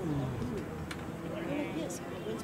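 Indistinct distant voices calling out across an open sports field, with one falling call near the start.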